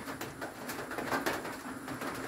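A dove cooing faintly over a soft, steady hiss.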